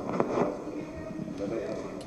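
Indistinct voices in a room, low and overlapping, with a few light clicks.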